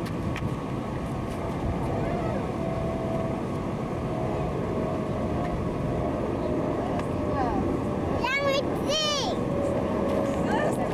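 Steady low rumble of wind on the camcorder microphone, with two short high-pitched cries from a person's voice near the end, each rising and then falling.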